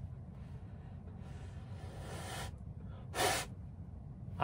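A person blowing into a handheld ball-in-tube wind meter: one long breath of about a second that grows stronger, then a short, sharp puff near the end.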